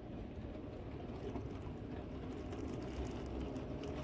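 Steady low rumble of an airport moving walkway and the concourse around it, with a few faint ticks.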